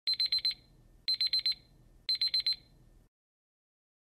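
Digital countdown timer's alarm beeping as the count hits zero: three bursts of four quick high-pitched beeps, about one burst a second, in the manner of an alarm clock.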